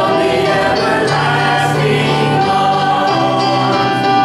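A mixed group of men and women singing a hymn together, with keyboard accompaniment; the voices hold long, sustained notes.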